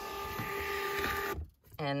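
Dymo LabelWriter 4XL thermal label printer feeding a label out with a steady mechanical whir, lining up a newly loaded roll, then stopping suddenly about one and a half seconds in.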